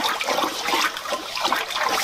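Water churning and bubbling as a red-hot 1095 steel hammer head is swirled around in a water quench barrel to harden it. The steel is kept moving so bubbles cannot cling to its surface and stop it fully hardening.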